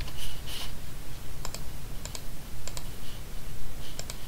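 Computer keyboard keystrokes and mouse-button clicks: a few separate sharp clicks, some in quick pairs, over a faint low hum.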